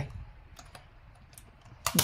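A few light plastic clicks and taps as the control circuit board of a FUMA ZCUT-9GR tape dispenser is pressed down onto its locating pins, with a sharper click near the end.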